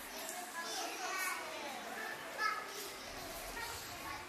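Young preschool children chattering among themselves, several high voices overlapping in a low background murmur.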